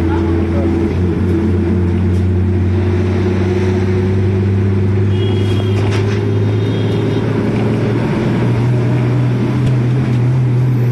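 Engine of the vehicle carrying the camera, running with a steady low hum that rises in pitch about eight seconds in as it picks up speed.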